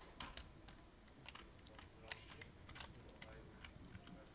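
Near silence with faint, irregular light clicks, several a second.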